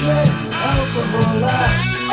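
Early-1980s heavy metal/hard rock studio recording: electric guitar with bass and drums keeping a steady beat.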